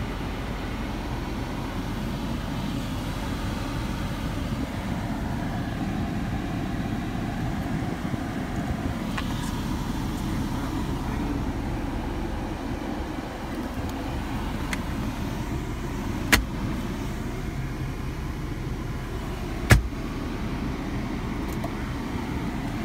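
Steady low rumble inside a car's cabin, with two sharp clicks about three seconds apart late on.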